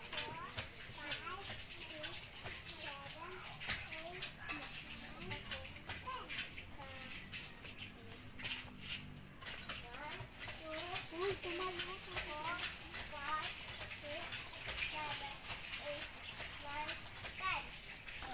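Several children talking and chattering among themselves, with a steady hiss in the background.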